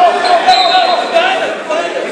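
Coaches and spectators shouting in a gym during a wrestling bout, with a single thud about half a second in as the wrestlers hit the mat.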